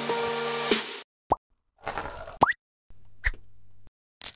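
Intro music on a held chord that cuts off about a second in. Then come short cartoon-style 'bloop' pop sound effects: two quick upward pitch sweeps and a brief blip, with silent gaps between them.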